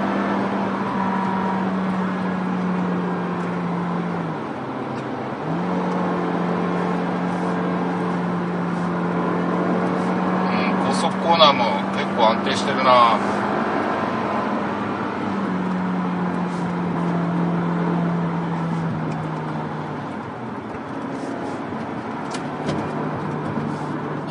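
Peugeot 3008's 1.6-litre turbo four-cylinder engine pulling at high revs under hard acceleration with its six-speed automatic, heard from inside the cabin. Its note dips briefly about four seconds in, then falls in steps and fades in the last few seconds as the driver eases off. A few short high chirps come near the middle.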